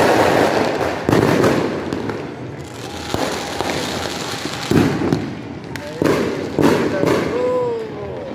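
New Year's fireworks going off across the neighbourhood: about five loud bangs at uneven intervals, each trailing off in a rolling rumble.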